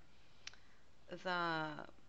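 A single short click about half a second in, over quiet room tone, followed by a woman's voice drawing out one word ("the").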